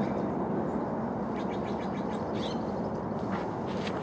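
Steady outdoor background noise with a few faint, brief rustles and clicks; no bleats or voices.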